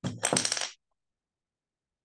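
A brief rattling clatter, under a second long, that cuts off suddenly, heard through a video call's audio.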